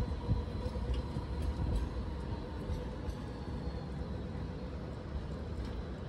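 Sydney light rail tram moving along the street track: a low rumble with a steady electric whine that slowly fades, under general city-street ambience.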